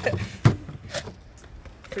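A dull thump about half a second in, then a sharp click, over a steady low rumble.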